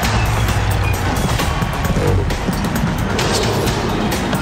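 Television sports-show opening theme music with a heavy bass, layered with whooshing sound effects.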